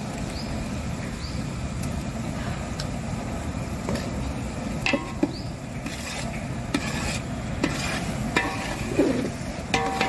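Onion and ginger-garlic paste sizzling steadily in hot oil in a large aluminium cooking pot, stirred with a long metal spatula that now and then knocks and scrapes against the pot.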